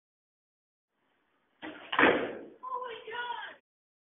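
Revision3 closing logo sting: silence, then about a second and a half in a sudden hit, followed by a short muffled voice-like tag. The sound is thin, with no high end.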